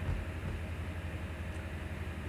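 Steady low hum with faint even room noise, and no distinct sounds in it.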